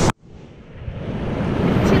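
A sudden drop-out, then a steady rush of surf and wind noise that fades up over about two seconds.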